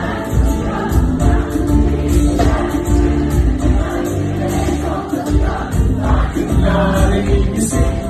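Live pop band playing loud amplified music with singing, heard from among the concert audience.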